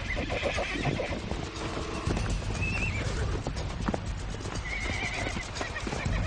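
Several horses squealing and neighing during an aggressive clash, with high squeals a few times over and scattered thuds of hooves.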